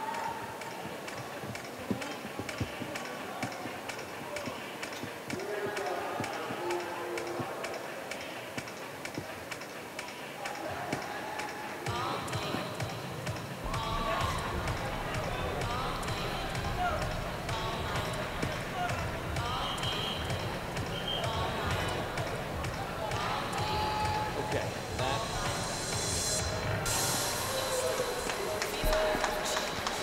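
Indoor track arena ambience: scattered voices from the crowd over a running patter of short thuds, growing fuller about twelve seconds in.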